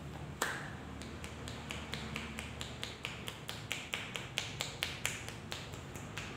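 Percussive massage strokes: the masseur's palms pressed together strike the client's head and face in a fast run of sharp claps, about four or five a second, after one louder snap near the start.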